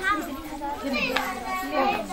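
Children's and women's voices talking over one another in a close group, with no music.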